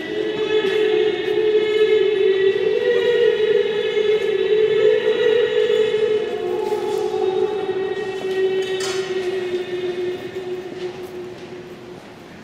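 Pipe organ holding long sustained chords in a large stone cathedral. The chord steps up a few seconds in and down again a little past the middle, then fades toward the end.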